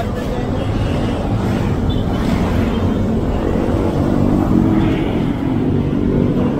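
Garbage truck's engine idling steadily close by, with street traffic around it.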